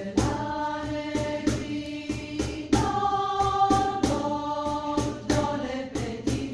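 Mixed choir of men's and women's voices singing a Christmas song in harmony, over a steady percussive beat of about two strokes a second.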